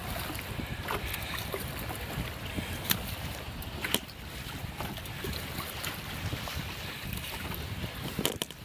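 Wind buffeting the microphone over choppy open water, a steady low rumble, with small waves splashing against the canoe. Two sharp knocks stand out, about three and four seconds in.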